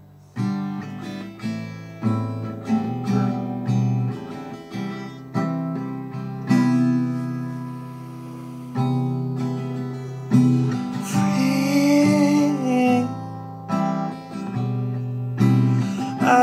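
Acoustic guitar strumming chords in an instrumental introduction, each strum starting sharply and ringing on, several times a second.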